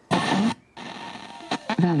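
FM radio receiving a distant station by sporadic-E skip. Snatches of a presenter's voice come through hiss and fading, cut twice by short silences as the tuner steps between 92.1 and 92.2 MHz.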